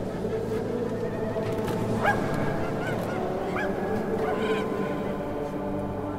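Geese honking, about four short calls a second or so apart in the middle stretch, over a low sustained music bed.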